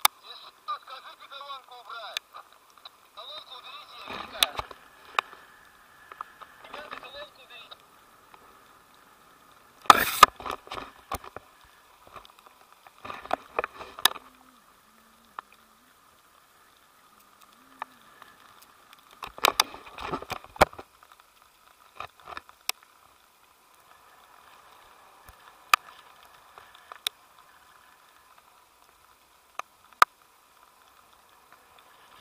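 Muffled voices in short bursts with scattered sharp clicks and knocks, the loudest about a third of the way in.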